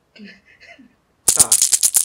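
A twelve-sided die rattling and clattering against the walls of a small wooden dice box: a dense run of sharp clicks starting over a second in.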